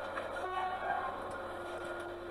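A distant train horn holding a long steady chord over a low steady rumble.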